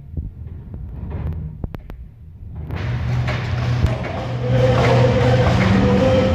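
Lowrider cars' engines rumbling as they drive around an indoor hall. About two and a half seconds in, the sound jumps to a much louder, fuller din that holds steady.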